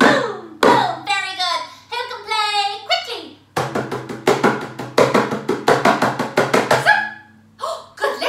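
Hand drum beaten loudly with the hand: a couple of single ringing beats about two-thirds of a second apart, then, after a short break, a fast run of rapid beats lasting about three seconds.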